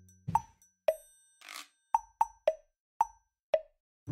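Background music in a sparse passage: about seven short plucky 'plop' notes at two pitches, spaced irregularly, with a brief shaker-like swish about a second and a half in.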